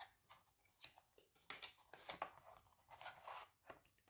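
Faint, scattered rustles and small clicks of smartphone box packaging being handled: cardboard inserts and a sleeved charging cable lifted out of the box.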